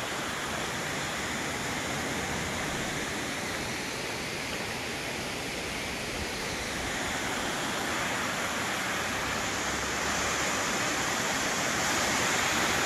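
Steady rush of a waterfall, water pouring down a rock face, growing a little louder in the last few seconds.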